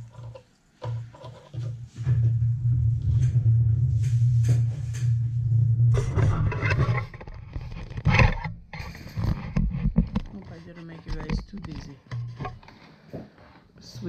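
Electric sewing machine running steadily at speed for about five seconds as a zipper seam is stitched, followed by fabric handling noises.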